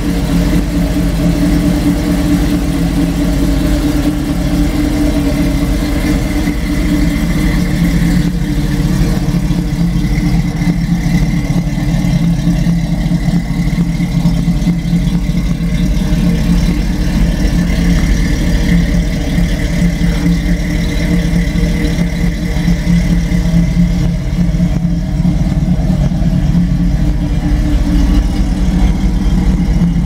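Small-block Chevrolet 350 V8 crate engine idling steadily through a Flowmaster exhaust with side-exit pipes, a loud, even idle with no revving.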